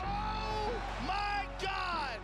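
Three loud, high-pitched yells, the last one falling in pitch.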